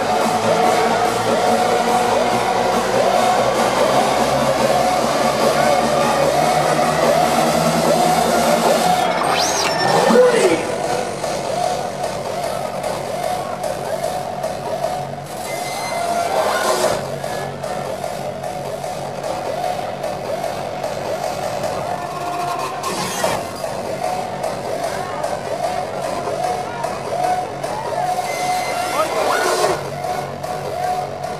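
Loud hardstyle dance music from a live DJ set, played over a large venue sound system and recorded from within the crowd. About ten seconds in, a rising sweep builds to a peak, then the track drops back slightly and runs on steadily.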